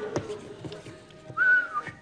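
A short whistled note, held steady for under half a second with a small dip at its end, a little past halfway through. A light click sounds at the very start.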